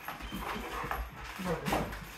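A dog's claws clicking on a hardwood floor as it walks about, a few scattered clicks, with a brief snatch of speech near the end.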